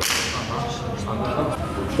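A sudden sharp whoosh right at the start that fades within about half a second.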